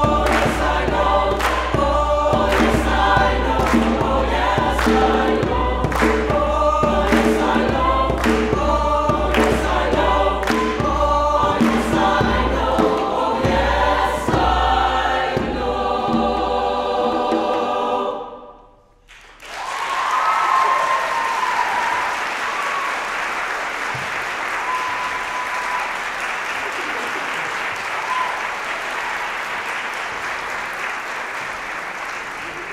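Mixed choir singing with hand claps and a hand drum keeping a steady beat, about one beat a second. The song ends about eighteen seconds in, and after a second's pause the audience breaks into applause with a few cheers.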